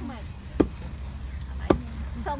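A long wooden pestle pounding young rice grains in a wooden mortar to make ambok (flattened rice). Two heavy thuds about a second apart.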